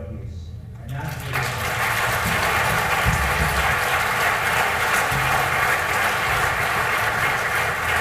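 Audience applauding in a hall, starting about a second in and holding steady.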